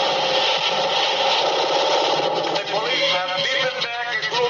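Action-trailer soundtrack heard off a TV: a dense, continuous din of noise over a violent shot of shattering glass and flying debris, giving way about two and a half seconds in to shouting voices.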